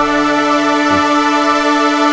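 A single sustained chord held on a layered software-instrument patch: Spitfire LABS tape-orchestra sul tasto strings stacked with synth strings, synth pads and soft piano, ringing steady and unchanging.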